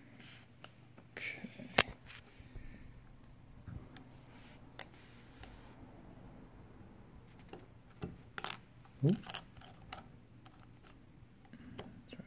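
Scattered faint clicks and taps of plastic and metal as a CR2032 coin cell battery is fitted and pressed into the battery holder of a 2015 Honda Civic key fob.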